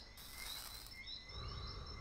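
Faint outdoor night ambience: repeated short high chirps from crickets over a low steady hiss.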